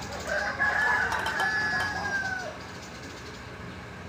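A rooster crowing once: one long call of about two seconds that falls away at the end.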